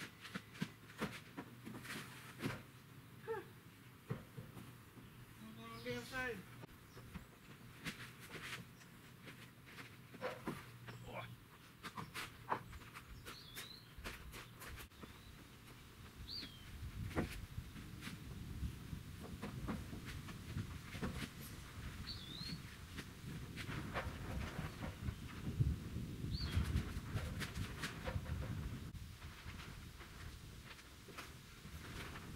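Lumber knocking and clattering against wooden stud framing as a long rafter board is worked into place, with scattered sharp knocks throughout. A low gusting wind rumble builds in the second half, and a few short bird chirps come in between.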